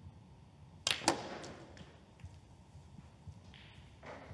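Two sharp clicks of snooker balls about a fifth of a second apart, each with a short ring.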